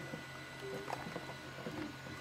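Faint plastic handling sounds as a DJI Mini 3 flight battery is slid into the drone's battery bay: light scrapes and a few small ticks over a steady low hum.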